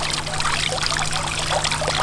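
Water splashing and trickling steadily from a tiered stone garden fountain into its basin, starting abruptly at the cut.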